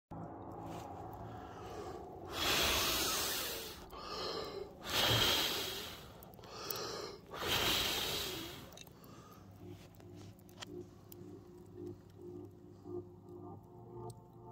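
A person blowing hard on glowing campfire embers in three long breaths, drawing a breath between each, to liven the fire. Faint music comes in after the blowing stops.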